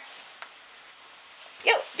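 A dog's short high yelp near the end, falling steeply in pitch, after low room tone with a faint click.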